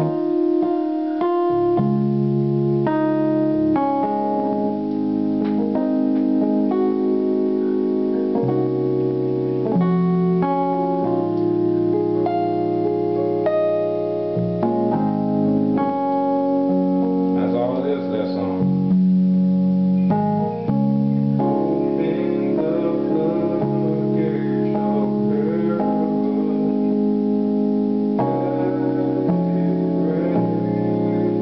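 Electronic keyboard playing a slow gospel chord progression in C sharp, sustained chords changing every second or two.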